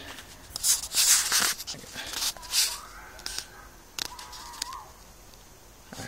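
Several short bursts of rustling and handling noise as the camera is moved through the plants, the loudest about a second in.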